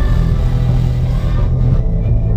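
Live band playing loudly through a concert PA, dominated by a heavy, steady bass.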